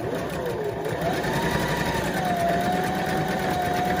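Electric sewing machine running, stitching a straight seam through fabric; its motor whine rises about a second in and then holds steady.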